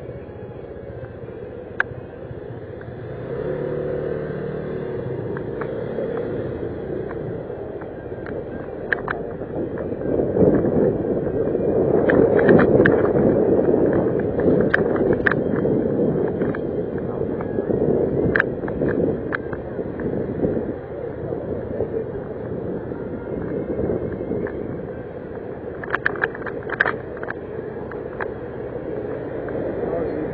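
Motor scooter being ridden, heard from a camera mounted on the rider: steady engine and riding noise that swells in the middle and eases off towards the end, with scattered sharp clicks.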